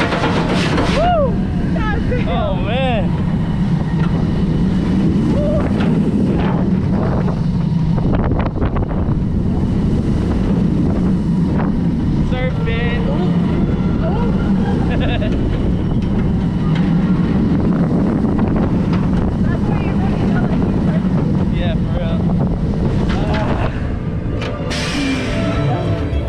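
Mako roller coaster train speeding along its steel track: a steady low rumble of the wheels under heavy wind rushing over the microphone. Riders yell in the first few seconds, after the train crests the top of the lift hill.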